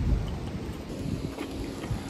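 Wind rumbling on the microphone over street noise, with a low steady hum coming in about a second in.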